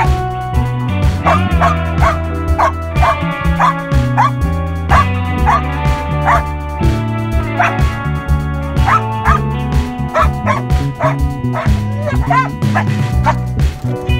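Belgian Malinois barking repeatedly, short sharp barks about two a second, over background guitar music.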